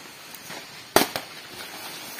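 A machete chopping through the stalk of a fan-palm (tokopat) leaf: one sharp strike about a second in, followed closely by a smaller one.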